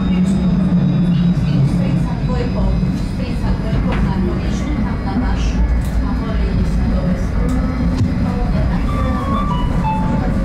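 Tram running along the track, heard from inside the car: a steady low rumble of wheels on rails with a motor hum.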